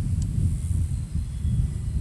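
Wind buffeting the microphone: a low, uneven rumble.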